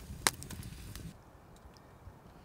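Campfire embers crackling under a heating can of food, with one loud sharp snap about a quarter second in; the low background noise drops away about a second in.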